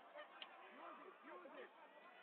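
Faint short shouts of voices echoing across a large sports hall, several rising-and-falling calls bunched in the middle, with a brief sharp tick about half a second in.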